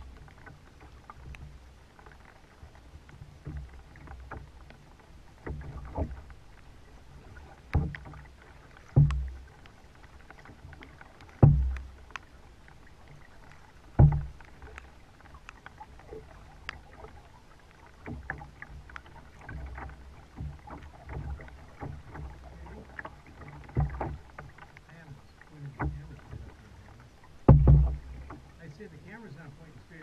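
A kayak being paddled with a two-bladed paddle, with a steady low rumble and a series of sharp, hollow knocks on the plastic hull a couple of seconds apart. The knocks are loudest around the middle and near the end.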